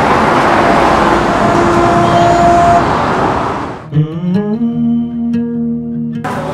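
Loud, steady rushing street noise from road traffic, with a faint steady tone in the middle. It fades out about four seconds in, as music with sustained notes begins.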